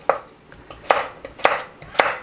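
Chef's knife cutting a peeled raw potato into cubes, the blade knocking on a wooden cutting board in a few sharp strikes about half a second apart.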